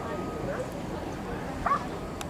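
A Schutzhund protection dog barking at a helper hidden in a blind, the bark-and-hold that signals it has found and cornered him, with a loud bark near the end.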